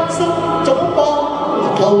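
A man singing a Cantonese pop song into a handheld microphone, with instrumental accompaniment.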